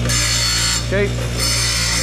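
Craftsman bench grinder running with a steady hum while a cut steel bracket is pressed to the wheel twice, each pass a harsh grinding hiss lasting under a second, deburring the cut ends.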